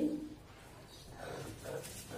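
The end of a drawn-out spoken word, then faint soft rubbing and squishing strokes from about a second in as a stone pestle mashes a dried-fish bharta against a board.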